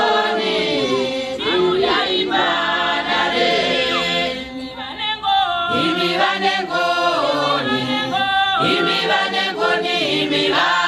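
A congregation of mostly women's voices singing a hymn together without instruments, in held notes that slide from one pitch to the next, with a short dip between phrases about halfway through.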